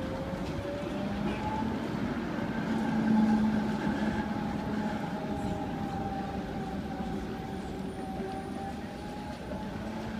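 Electric city tram passing close by: a steady motor hum with a whine that rises in pitch over the first second or two and then holds, loudest about three seconds in.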